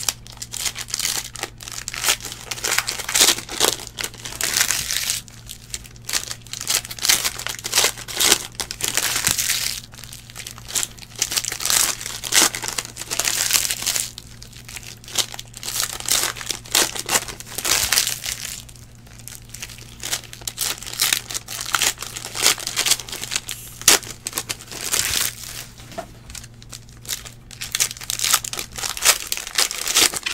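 Plastic trading-card pack wrappers crinkling and tearing in irregular bursts as packs are ripped open by hand.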